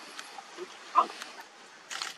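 A lion cub gives one short, pitched call about a second in.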